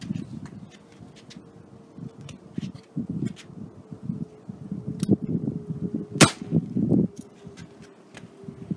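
A single shot from an Umarex S&W M&P 45 CO2 air pistol firing a .177 pellet: one sharp crack about six seconds in, with a fainter click about a second before it. Low rustling and a faint steady hum run underneath.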